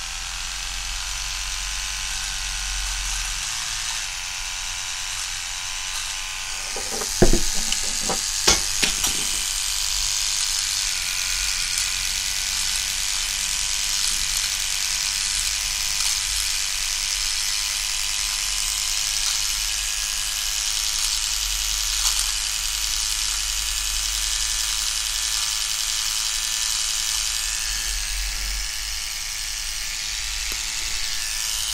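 Small battery-powered eyebrow trimmer running with a steady high-pitched buzz as it trims along the eyebrow. A few sharp clicks come about seven to nine seconds in.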